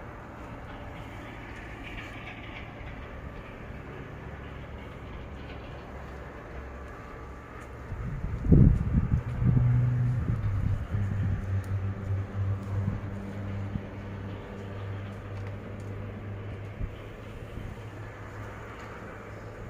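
A low, steady mechanical hum, with a loud low rumble about eight and a half seconds in, after which the hum holds a clearer low pitch.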